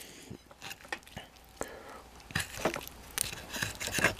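A metal fork cutting into an air-fried stuffed bell pepper on a ceramic plate: scattered faint clicks and scrapes, more of them in the second half.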